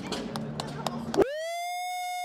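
Hall background noise, then about a second in a clean, high siren-like tone slides up and holds while all other sound drops out: a sound effect laid over the celebration in the edit.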